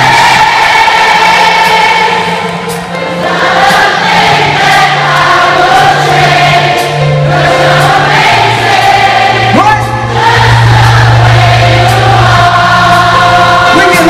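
Live concert band music through an arena PA, with long, choir-like sung chords swelling in phrases over a slow bass line that steps between a few low notes.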